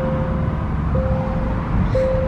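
Low rumble of a car's engine and tyres heard from inside the cabin while it drives slowly. Over it runs a steady faint tone that breaks off twice and comes back.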